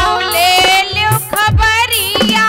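A young girl sings a Bundeli folk song in a high voice with long, bending held notes, accompanied by a harmonium and the low, pitch-gliding bass strokes of a hand drum.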